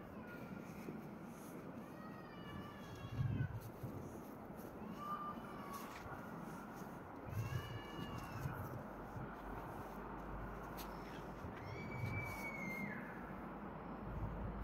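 An animal calling about four times, each a drawn-out cry a few seconds after the last, with a few soft low thumps.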